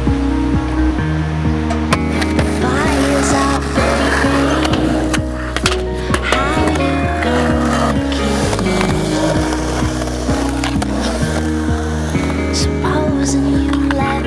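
Skateboard wheels rolling on concrete, with several sharp clacks of the board popping and landing, under a music track that plays throughout.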